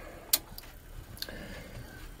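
Low background street noise, with one sharp click about a third of a second in and a fainter click just after a second.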